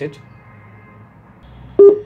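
A single short, loud beep near the end, lasting about a fifth of a second, from a USB Bluetooth audio receiver playing through the desktop speakers: the tone that signals it has paired with the phone. Before it there is only a faint steady hiss from the speakers.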